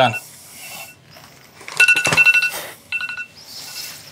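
Phone timer alarm ringing in rapid two-pitch electronic trills, one burst about two seconds in and a shorter one a second later, signalling that time is up.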